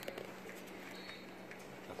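Quiet room tone: a faint steady low hum with a few faint clicks.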